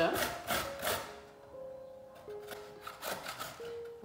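Fresh ginger rubbed over a metal hand grater in quick rasping strokes, about four a second, for the first second. Soft held notes of background music follow, with a few more grating strokes about three seconds in.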